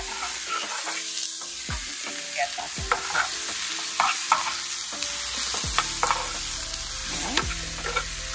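Vegetables sautéing in oil in a hot frying pan, sizzling steadily, while a metal spoon stirs them and knocks and scrapes against the pan every second or so.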